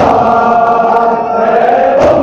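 A group of men chanting a noha, a Shia mourning lament, together in long held notes, with one sharp slap or knock right at the start.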